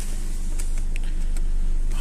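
Ford Focus 1.8 petrol four-cylinder engine idling steadily at about 900 rpm, heard from inside the cabin, with a few faint clicks.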